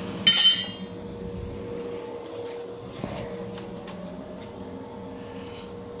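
A single metallic clank with a short ringing about half a second in, then a steady hum with a thin whine and a faint knock near the middle. The hum fits the boiler's pellet-stove exhaust fan running.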